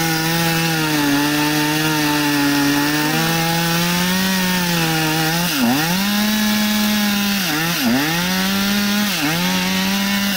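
Chainsaw running at high revs while cutting through a downed log. In the second half its revs dip sharply and recover several times as the chain loads in the cut.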